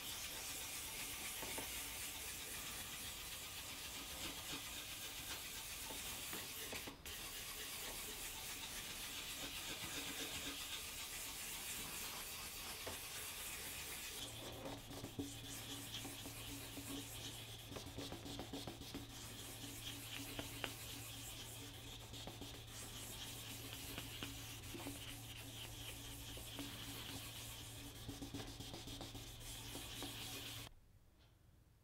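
Hand sanding of cured lacquer on a guitar neck with abrasive paper, in quick back-and-forth rubbing strokes, cutting back the finish to level orange peel. About halfway through, a steady low hum joins the scratching.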